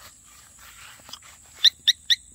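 Three short, high chirps about a quarter second apart near the end, from the motorcycle's security alarm being set off by a touch on the bike: a very sensitive alarm.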